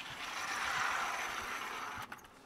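A vertical sliding chalkboard panel being pulled down along its track: a steady sliding noise.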